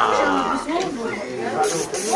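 People talking in a room, several voices overlapping, with a brief hiss near the end.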